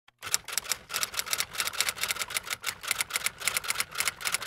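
Typewriter-style typing sound effect: a rapid, uneven run of sharp key clicks, several a second.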